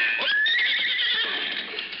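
A horse whinnying once, its shrill cry rising and then wavering for over a second, as the tail of a loud shot fades at the start. It is a radio-drama sound effect of a horse spooked by gunfire.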